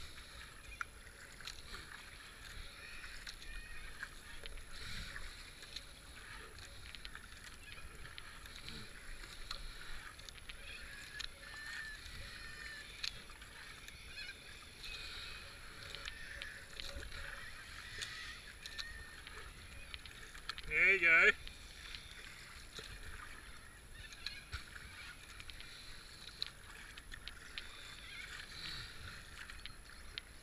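Kayak paddle strokes and water splashing and trickling along the hull as the kayak moves down the river, with small scattered splash clicks. About twenty seconds in, a brief, loud wavering call cuts in.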